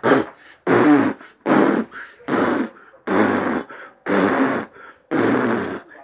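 A man blowing hard at close range into a phone microphone in repeated forceful puffs, about seven in six seconds, each around half a second long, with a raspy vocal buzz in some of them.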